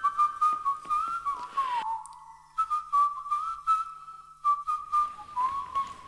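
A whistled tune: one melody line sliding between notes, with faint regular ticks behind it. It breaks off briefly about two seconds in, then carries on.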